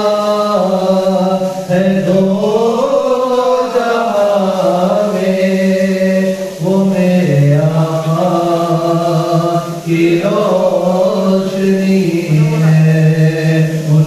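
Unaccompanied naat recitation: a man's voice chanting Urdu devotional verse in long held notes that glide slowly up and down, with no instruments.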